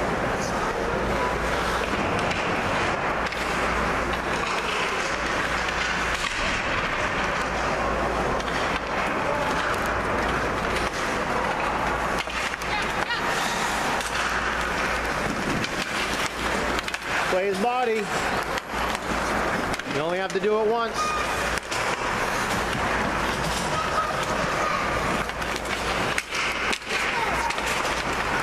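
Ice rink sound during play: skate blades scraping and carving on the ice under a steady din of spectator chatter. Two drawn-out shouts from the stands, a few seconds apart, a little past the middle.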